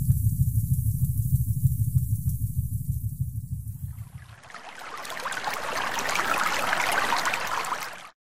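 Sound-design effects for an animated logo: a deep, fluttering rumble for about the first four seconds, then a rushing whoosh that swells and cuts off abruptly at the end.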